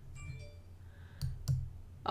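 Two sharp computer mouse clicks, about a third of a second apart, a little over a second in.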